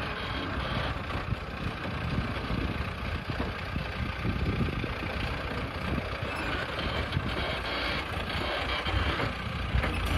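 Tractor engine running steadily under load while its rear rotavator tills the weedy soil, a continuous rumble heard from a short distance.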